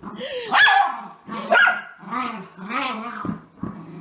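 Miniature schnauzer barking in play: two loud barks about half a second and a second and a half in, then a run of shorter calls that rise and fall in pitch.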